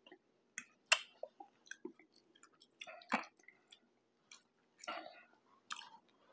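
Chewing a mouthful of chitlins (pork intestines): irregular wet smacking and clicking mouth sounds, the sharpest click a little under a second in.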